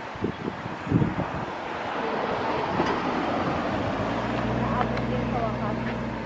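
Wind buffeting the microphone in the first second, then a motor vehicle's engine humming steadily through the second half, fading near the end.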